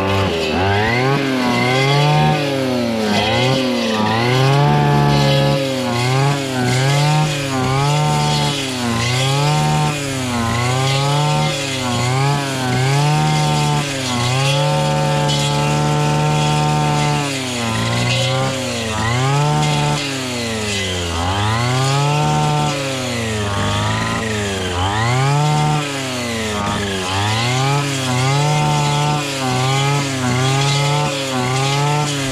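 Two-stroke petrol brushcutter running at high revs while clearing dense weeds. Its engine pitch dips and recovers again and again as the blade bites into the thick growth, and it holds steady at full throttle for a few seconds in the middle.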